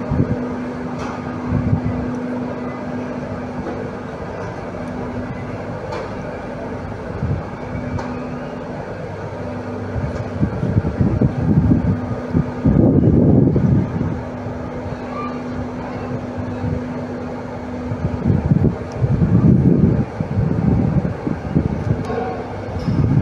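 A steady low hum with a single held tone, broken by loud, rumbling gusts of wind on the microphone, a long stretch about halfway through and again near the end.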